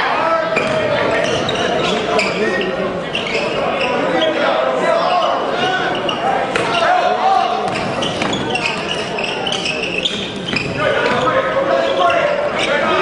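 Basketball game sound in a gymnasium: a ball bouncing on the hardwood court among the voices of the crowd and players, echoing in the large hall.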